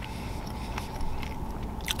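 A man chewing a mouthful of chorizo tlayuda with his mouth closed, a few faint soft clicks of chewing over a steady low hum inside the car.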